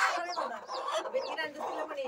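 Broody native hen clucking on her nest of eggs, in short broken calls, with a few short high-pitched peeps among them.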